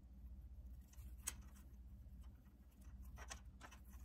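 Faint handling of jute cord being tied into small knots by hand: quiet rustles, with one sharp click about a second in, over a low steady hum.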